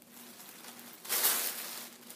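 Paper and plastic packaging crinkling as it is handled, starting about a second in and lasting nearly a second.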